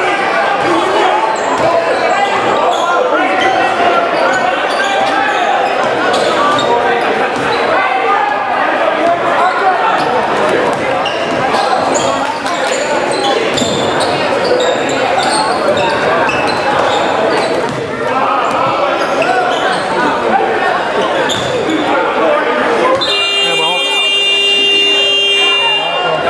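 Basketball game sounds in a large gym: the ball bouncing on the hardwood court under a steady mix of players' and spectators' voices, echoing in the hall. About three seconds before the end, a steady electronic buzzer sounds and holds until the end.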